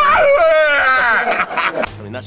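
A man's loud, high-pitched laughing cry: one long call that slides down in pitch, then breaks into shorter laughs that fade out near the end.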